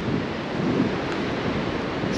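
Strong wind buffeting the microphone: a steady, deep rush, with surf breaking on the shore mixed in.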